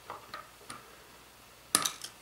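Nylon cable tie being pulled tight on a 3D printer's toothed belt, giving a few faint ratchet clicks. A single sharp click follows near the end.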